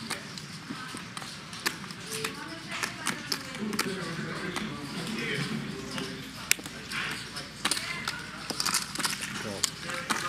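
Poker chips clicking irregularly as a player handles his stack and puts in a call, over a low murmur of voices at the table.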